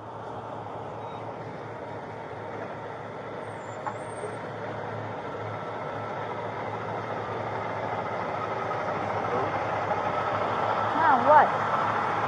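Steady vehicle noise: a low engine hum under a wash of road noise that slowly grows louder. A short voice is heard near the end.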